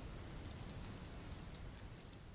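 A steady hiss peppered with fine crackles, like rain on a surface, fading away near the end.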